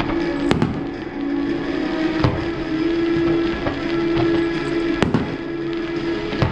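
Fireworks bursting overhead with sharp bangs, the loudest about half a second, two seconds and five seconds in, over music with sustained held notes.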